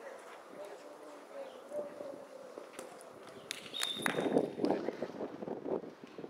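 Footballers shouting to each other during play, louder and busier from about four seconds in, with a few sharp knocks of the ball being kicked and a brief high whistle tone just before the shouting picks up.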